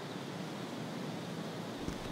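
Steady outdoor wind noise, an even rushing hiss with no voices or music, and a soft low thump near the end.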